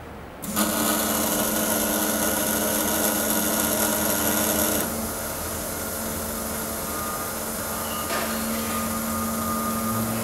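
Fuel injector test bench running a flow test: four Honda S2000 injectors pulsing rapidly and spraying test fluid into measuring cylinders, a steady buzzing with a hum underneath. It starts about half a second in and drops a little in level about five seconds in.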